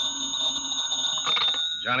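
Telephone bell ringing in one long continuous ring, a radio-drama sound effect. A man's voice comes in over the end of the ring.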